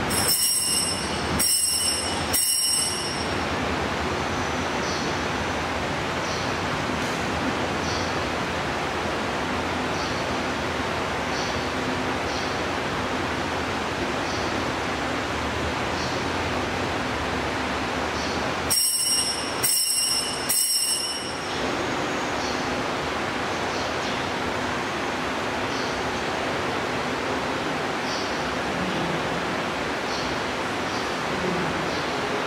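Small altar bell rung in two sets of three quick rings, one set at the very start and another about two-thirds of the way in, over a steady background hiss.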